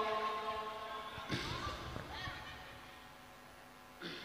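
The amplified voice of a Quran reciter fading away in the hall's echo just after a long held phrase ends. Faint brief voices come in about a second and a half in.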